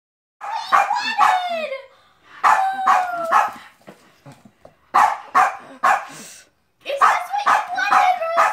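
Small dog barking in four quick bursts of several barks each, some sliding down in pitch. These are excited demand barks for a present of dog biscuits.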